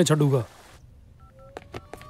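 A man's voice ends about half a second in. Then a mobile phone's keypad beeps twice with short two-note tones and gives several sharp tap clicks, while a faint tone slowly rises underneath.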